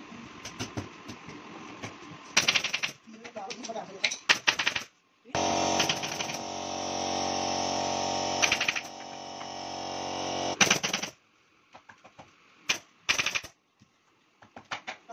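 A pneumatic staple gun fires quick runs of staples through upholstery webbing into a wooden sofa frame, in about five bursts a couple of seconds apart. In the middle a steady machine hum runs for about five seconds, then stops abruptly.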